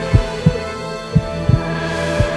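Heartbeat sound effect: paired low thumps, about one lub-dub a second, over a steady low drone, a cartoon's cue for a character's fright.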